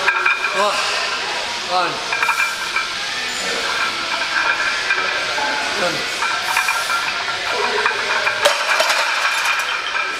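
Weight-room noise: a steady hiss with faint background music, and a few short falling groans from a lifter straining through a heavy barbell squat.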